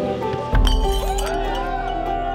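Background music, with a sudden sharp glassy clink or crash about half a second in, as a deep bass comes in.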